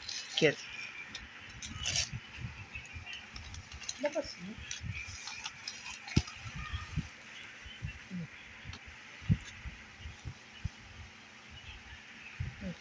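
Scattered light clicks, taps and rustles of hands handling small plastic folding phone stands and a cardboard box.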